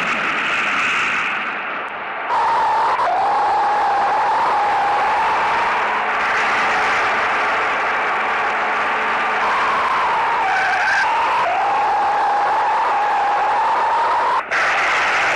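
Loud vehicle noise with a high, wavering whine that comes in about two seconds in and holds, dipping and rising a few times.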